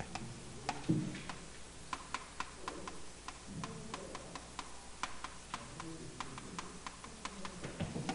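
Chalk clicking and tapping against a chalkboard while writing, as a quick, irregular run of sharp little taps.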